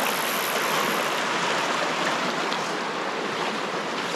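Fast mountain creek rushing steadily, running high with snowmelt.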